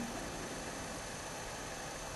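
Steady, even hiss with a faint low hum and no distinct events: the recording's background noise while no one speaks.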